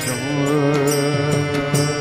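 South Indian devotional bhajan music: voices singing over held harmonium notes, with violin, and sharp percussion strokes keeping a steady beat.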